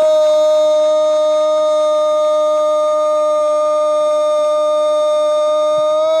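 A football commentator's drawn-out "gol" cry: one long, loud shout held unbroken on a single high pitch, calling a goal just scored.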